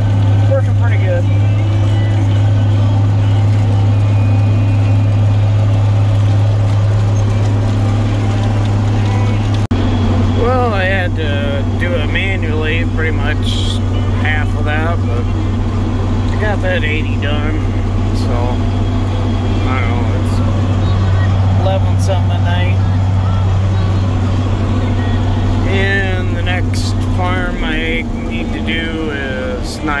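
Tractor engine droning steadily, heard from inside the cab. Its pitch drops a little about ten seconds in, and the drone eases off near the end.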